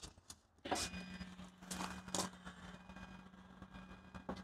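Electric motor of a Range Rover Sport's power fold-out tow bar running as the tow bar swings down from under the rear bumper: a click, then a steady low hum from about a second in.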